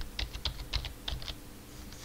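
Typing on a computer keyboard: a quick run of key clicks that stops about a second and a half in.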